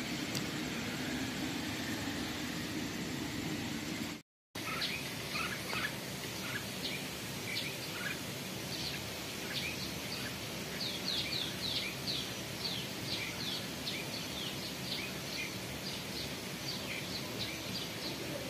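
Birds chirping: a run of short, high, quick notes, several a second, starting right after a brief cut-out about four seconds in. Before that, only a steady low background rumble.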